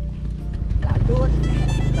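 Small motorcycle engine running, then speeding up and growing louder about a second in as the bike pulls away.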